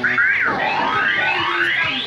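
Electronic fruit-machine sounds: bleeping tones that sweep up and down in pitch, ending in one long rising sweep in the second half.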